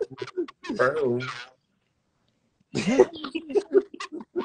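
Indistinct voices talking over a video call, cut by a dead-silent gap of about a second midway.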